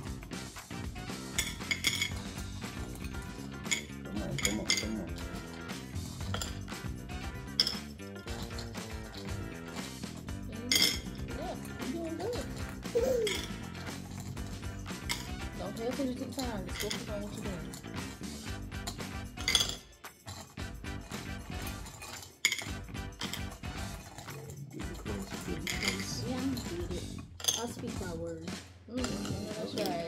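Small clinks and clicks of fingers and Mike and Ike candies against a small glass bowl as the candies are picked out one at a time, irregular and frequent, with background music underneath.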